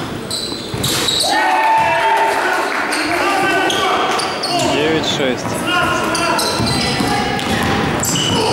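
Basketball game on a hardwood gym court: the ball bouncing, short high sneaker squeaks, and players' voices calling out, echoing in a large hall.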